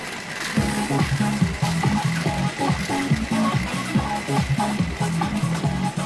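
Electronic dance-style music with a steady bass beat that kicks in about half a second in, plausibly the game soundtrack of a Fever Powerful 2024 pachinko machine.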